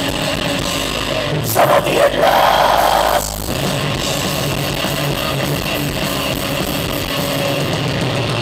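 A live thrash metal band playing loud distorted electric guitars, bass and drums, heard from the audience through a camera microphone. There is a brief louder surge about two seconds in.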